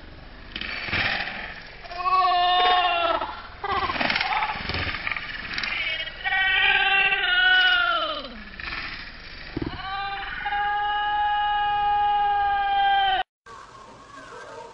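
An animal calling: several short calls that rise and fall in pitch, then one long, steady call starting about ten seconds in, which cuts off suddenly near the end.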